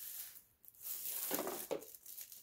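Soft rustling and crinkling of wrapping paper as a wrapped gift box is handled and lifted, with a few light knocks.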